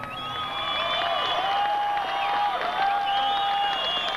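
Concert crowd applauding, cheering and whistling as a rock song ends, with several high held whistles and yells over the clapping.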